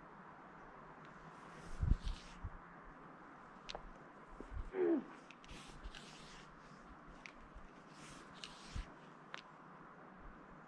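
Faint rustling and scattered soft knocks, with a few thin high ticks and one short falling tone about five seconds in.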